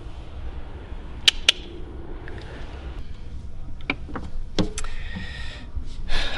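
A few sharp clicks and knocks from engine parts being handled, over a low steady hum; two clicks come close together about a second in, and softer knocks follow near the end.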